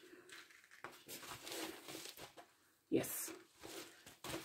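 A fabric-covered soft journal cover being handled: faint rustling as an elastic cord is worked through a hole in the cover, then a louder, brief rustle about three seconds in as the cover is moved and flipped over.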